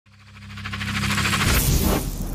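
Logo-intro sound effect: a riser swelling steadily louder, with a low steady drone under a fast fluttering high sweep that cuts off abruptly at the end.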